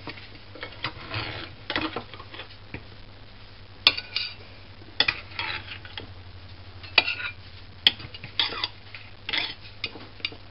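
Metal knife and pie server cutting into a baked pie and scraping and clinking against the pie dish: a few sharp clinks among softer scrapes, over a low steady hum.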